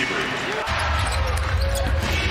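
Arena sound of a live basketball game: a basketball bouncing on the wooden court amid crowd noise. About two-thirds of a second in the ambience changes abruptly and a steady low rumble sets in.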